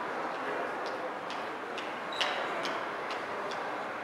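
Footsteps of hard-soled shoes clicking on a polished marble floor at about two steps a second, over steady room noise; one click a little past the middle is louder.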